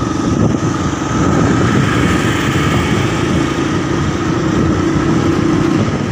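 Motorcycle engine running steadily while riding, heard from on the bike itself.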